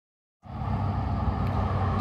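Steady low background rumble of outdoor traffic noise, cutting in abruptly about half a second in.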